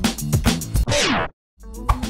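Background music with a steady beat that sweeps sharply down in pitch about a second in and stops dead, the way a tape-stop effect does, then starts up again after a brief silence.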